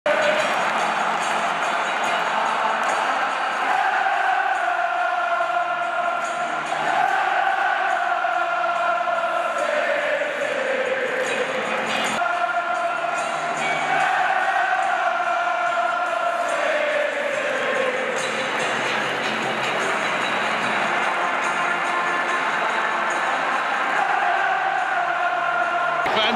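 A large football crowd singing a slow chant together in long held notes, each line sinking in pitch at its end, over a haze of crowd noise.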